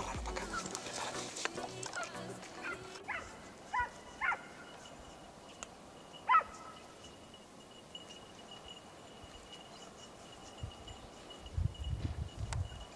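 Hunting dogs of a boar drive barking out in the scrub: a few short yelps about four seconds in and a louder one about six seconds in, as the pack works the slope. Background music fades out in the first three seconds.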